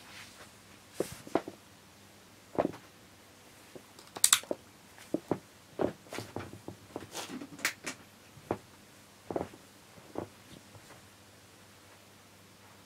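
A quiet room with a dozen or so brief, irregular faint clicks and ticks. The sharpest two come about four and eight seconds in.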